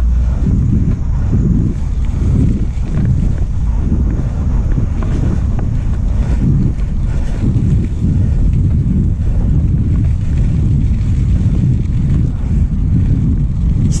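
Wind buffeting the microphone of a camera on a moving bicycle: a loud, steady low rumble.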